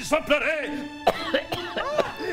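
A man's hoarse voice coughing and clearing his throat several times in short sharp bursts, in a pause between spoken lines.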